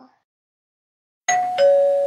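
Two-note doorbell chime, ding-dong: a higher note a little over a second in, then a lower note that rings on for about a second.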